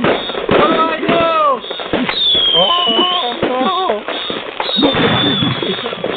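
Fireworks crackling and popping over a phone line, with a high whistle that dips and rises twice, while voices laugh and shout over the noise.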